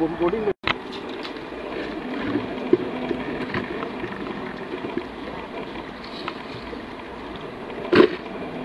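A steady engine hum with a few scattered sharp clicks and scrapes of stones as gravel is scooped from a pit.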